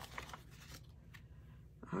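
Faint rustling and a few light ticks of paper banknotes being handled and tucked into a paper cash envelope.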